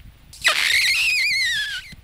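A high, wavering whistle-like squeal, about a second and a half long: it rises and then slides down in pitch. It works as a comic sound effect for the crouching puppet.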